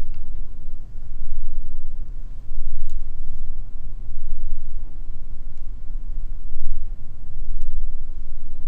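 Low, uneven rumble of background noise that swells and fades throughout, with a few faint clicks scattered through it.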